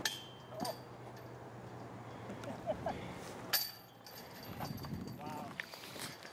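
Short, faint fragments of people's voices, with a few sharp knocks, the loudest about three and a half seconds in.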